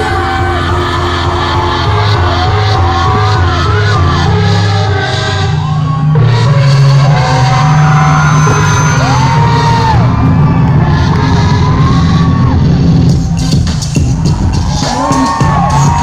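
Live concert music played loud through a venue PA: a heavy, continuous bass line and beat with a recurring melodic line over it.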